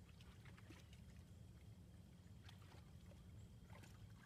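Near silence with a faint low rumble, and a few faint, light sloshes of water as a dog moves about in a plastic wading pool.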